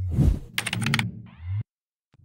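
Subscribe-animation sound effects: a low thump, then a quick run of about five sharp clicks like a mouse or keyboard, and a short buzzy low sound that cuts off suddenly.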